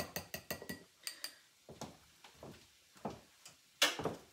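Stainless steel whisk beating egg in a glass bowl: quick clinks of the wires on the glass, about six a second, for the first second or so. Then scattered lighter taps, and a sharper knock near the end.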